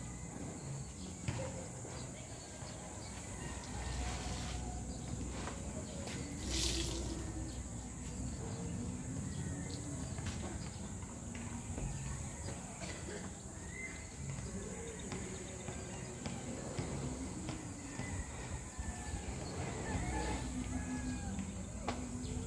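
Wind rushing and gusting over the microphone, with a steady high insect buzz behind it and a short rustling burst about six seconds in.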